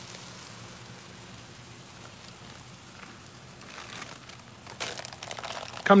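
Shrimp and chicken pieces sizzling steadily on a Blackstone flat-top griddle, with a few sharper crackles and clicks near the end.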